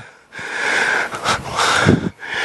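A student's faint, distant voice asking a question from the audience, heard muffled and hissy through the lecturer's headset microphone, starting about half a second in after a brief hush.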